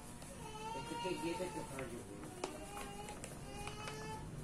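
A faint voice singing in the background: held notes that slide in pitch, coming and going, with a few soft clicks.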